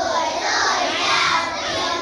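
Children's voices singing a song, sustained sung notes gliding in pitch.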